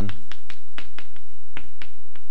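Chalk striking and scraping on a blackboard as words are written, a quick irregular run of sharp ticks and clicks.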